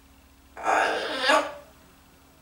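Blue-fronted Amazon parrot giving one raspy, throaty call that starts about half a second in, lasts about a second and ends in a louder burst.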